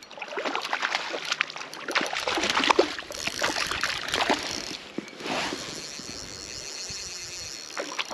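A hooked trout thrashing at the water's surface, with irregular splashes for about the first five seconds, then a steadier, fainter hiss.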